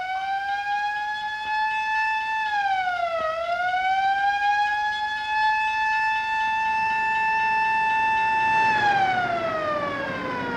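A single mechanical siren wailing. Its pitch climbs, dips once and climbs back about three seconds in, holds steady for several seconds, then winds steadily down near the end, with a low rumble rising beneath it.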